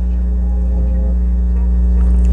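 Steady low drone of a bus engine and tyres heard from inside the moving bus's cabin, holding one even pitch throughout.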